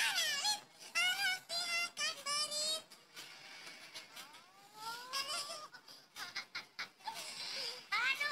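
A high-pitched, cartoonish voice crying and whimpering in short, trembling notes, then a long rising wail about four to five seconds in.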